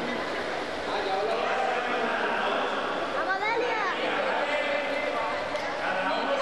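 Crowd of children chattering and calling out over one another, with a rising and falling shout about three seconds in, echoing in an indoor pool hall.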